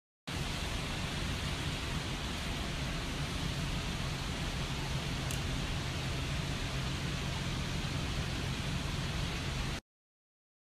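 A steady rushing noise with a low rumble underneath and a faint tick about five seconds in.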